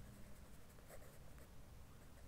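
Faint scratching of a pen writing on paper, in short strokes as a word is written out.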